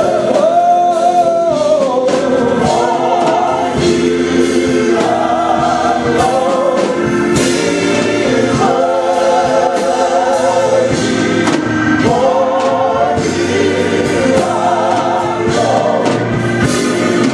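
Gospel praise-and-worship song sung by a small mixed group of singers in harmony on microphones, over sustained keyboard chords.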